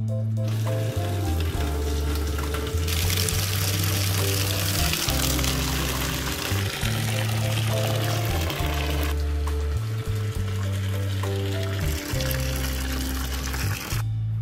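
Hot milk pouring in a steady stream from the tap of a steel cooking cauldron into a metal pot, from just after the start until about nine seconds in. Background music with a slow melody plays throughout.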